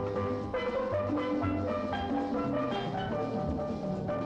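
Steel band playing: steelpans ring out a quick run of notes, with bass pans sounding low notes underneath and hand drums and other percussion keeping the rhythm.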